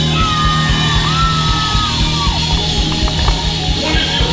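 A live blues band plays on an amplified stage with drums, bass, keyboards and electric guitar. A high note is held for about two seconds, then slides down.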